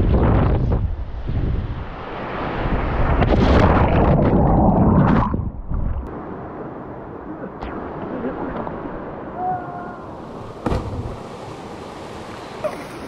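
Heavy rumbling buffeting and handling noise on a phone microphone for the first five seconds or so, then the steady rush of a fast river, with a single sharp knock near the end.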